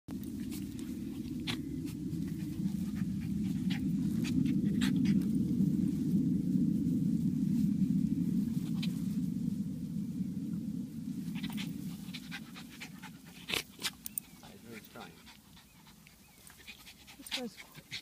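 A small terrier grumbling low and steadily for about twelve seconds while it rolls and wriggles on the grass. It then falls away to scattered short clicks and brief sounds.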